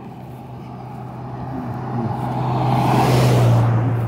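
A car passing by on the road, growing louder to a peak about three seconds in, then beginning to fade.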